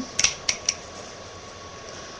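Plastic Lego bricks clicking and knocking together as they are handled, four sharp clicks in quick succession near the start, then only a faint steady hum.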